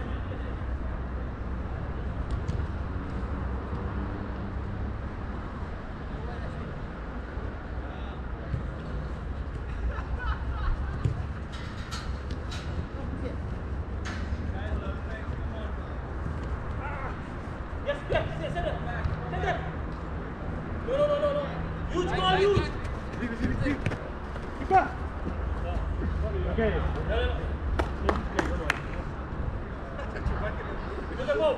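Players calling and shouting across a small-sided soccer game, mostly from about halfway through, with scattered sharp knocks of the ball being struck, over a steady low rumble.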